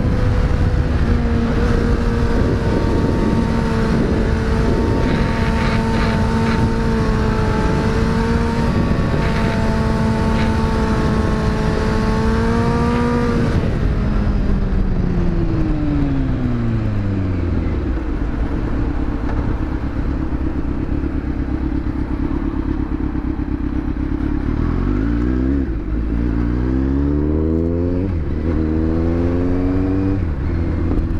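Kawasaki Z900 inline-four motorcycle engine heard from the rider's seat over wind rush. It holds a steady cruise for the first half, then the pitch falls away over several seconds as the throttle is closed. Near the end it revs up through two or three quick gear changes as the bike accelerates.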